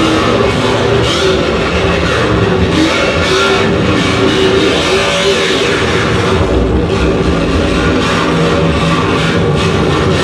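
Harsh noise played live on electronic gear: a loud, unbroken wall of distorted noise with a few droning tones running through it and no beat.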